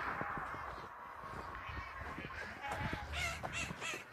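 Several short, harsh bird calls in quick succession in the second half, over soft background noise.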